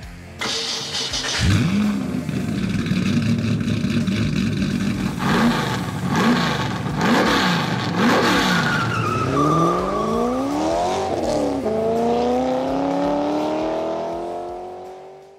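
A car engine catching and revving up about a second and a half in, then blipped up and down several times. It then accelerates hard with the pitch climbing steadily, shifting up once before climbing again.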